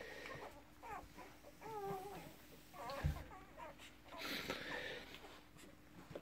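Newborn working kelpie puppies squeaking and whimpering faintly while nursing, a few short wavering cries spread through, with one soft thump about three seconds in.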